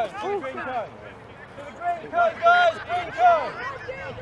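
Players' voices calling out across the field in short, raised calls. The calls pause briefly a little after a second in, then come back louder.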